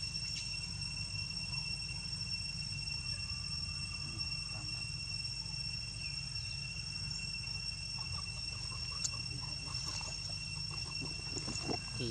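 Steady insect chorus: a continuous high two-pitched drone over a low hum, with a few faint chirps near the end.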